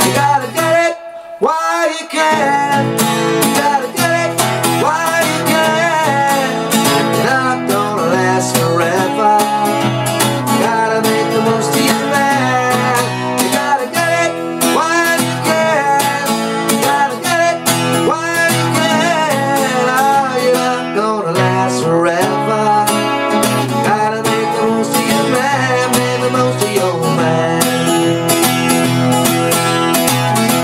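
Acoustic guitar playing a rock-and-roll song: strummed chords with picked and bent notes, capoed at the second fret and played in D shapes to sound in E. There is a short break about a second in, then the playing runs on steadily.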